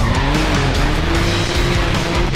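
Can-Am Maverick X3 side-by-side's turbocharged three-cylinder engine revving as the buggy slides across the paving, its note rising in the first half second and then holding, with tyre squeal, over loud background rock music.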